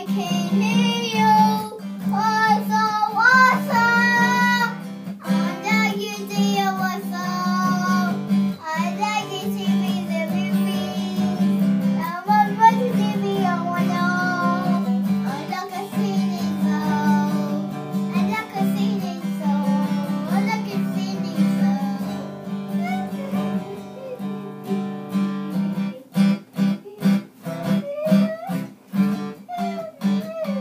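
A young girl sings over a strummed acoustic guitar. Near the end her voice drops out and only the guitar strumming goes on.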